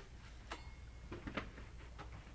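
A few faint, short clicks and scrapes of a metal palette knife against a painted canvas.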